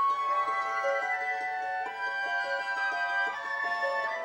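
Orchestral music: a concert harp plucks a run of notes over sustained chords from the orchestra.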